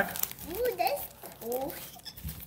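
Crinkling of foil Pokémon card booster-pack wrappers being handled, under two short high-pitched phrases from a young child's voice.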